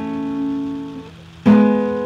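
Acoustic guitar with its low E string tuned down to D. A few strings plucked together ring out and fade, then are plucked again about a second and a half in.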